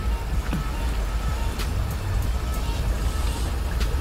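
Car interior while driving through floodwater: a steady low rumble of engine and road with the swish of water under the tyres, and a few light clicks.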